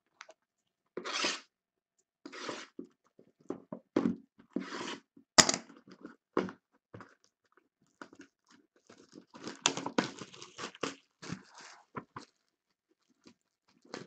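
Small cardboard trading-card boxes being picked up, slid and set down on a table, with scattered rustles, scrapes and knocks. A sharp knock about five seconds in is the loudest, and a busier run of rustling comes near the ten-second mark.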